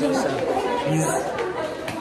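Speech only: several people talking at once, their voices overlapping close to the microphone.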